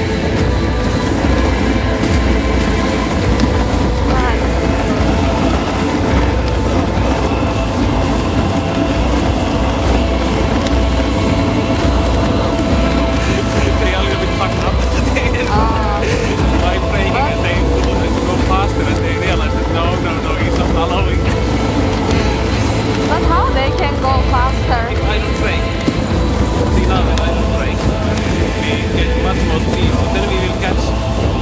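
Husky-drawn dog sled running over packed snow: a steady, loud rumble of the runners and wind buffeting the microphone. Brief faint voice-like calls about halfway through and again later.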